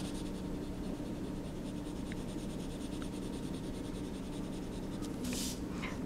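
Crayola felt-tip marker scribbling on paper: a soft, steady scratching made of quick, repeated back-and-forth strokes.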